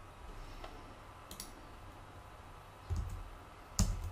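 Computer mouse clicks: a faint click about a second and a half in and a sharper, louder click just before the end, with a soft low thump shortly before it, over faint room tone.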